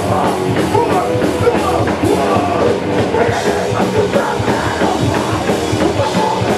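Hardcore punk band playing live and loud: distorted electric guitars and a fast, steady drum kit, with vocals into the microphone.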